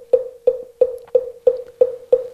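Moktak (Korean Buddhist wooden fish) struck at a steady pace of about three knocks a second, each knock with a short ringing tone, keeping time for mantra chanting.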